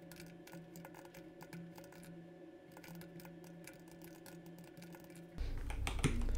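Faint computer keyboard typing: quick, irregular key clicks over a low steady hum.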